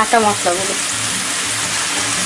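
Sliced onions sizzling steadily as they fry in hot oil in a pot.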